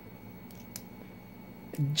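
Faint clicks from the cross-bolt (axis-style) lock of a ball-bearing folding knife being worked, twice about half a second in. The small tick comes from the slightest lock stick when the lock is released.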